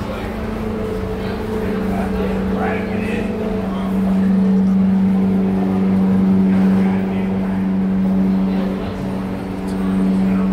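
Steady mechanical hum of running machinery, getting louder about four seconds in and easing near the end, with faint voices behind it.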